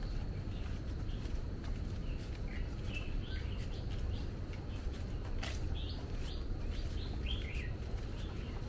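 Birds chirping in the trees, a string of short calls from about two and a half seconds in until near the end. Beneath them a steady low rumble and a few light footsteps on the paved path.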